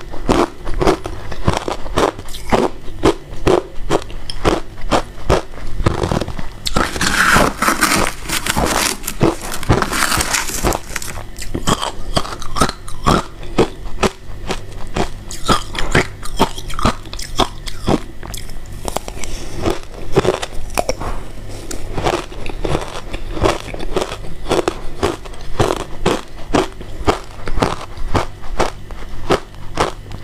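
Shaved white ice crunched and chewed close to a clip-on microphone: a rapid, even run of crisp crunches throughout, with a denser, brighter stretch of crunching from about six to eleven seconds in.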